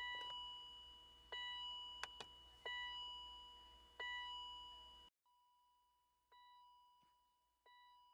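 BMW E39 warning gong bonging over and over with the door open and the key in the ignition, one fading bong about every second and a third. Two light clicks come about two seconds in; the level drops away sharply about five seconds in, and two fainter bongs follow near the end.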